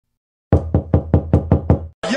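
Knocking on a door: seven quick, even knocks, about five a second, starting half a second in.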